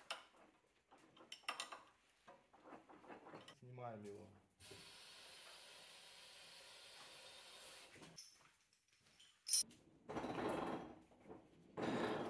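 Sparse, faint clicks and knocks from a large lathe's chuck being worked with a long chuck key, with a sharp click and a short scraping rustle about ten seconds in.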